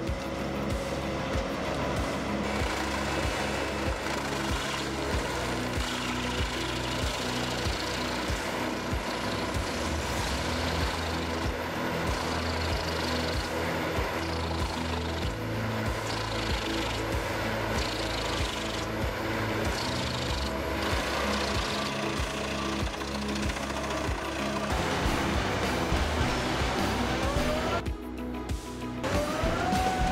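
Industrial wood shredder and log-splitting machinery at work, breaking logs apart with a continuous rattling, knocking mechanical noise, mixed with background music with a steady beat.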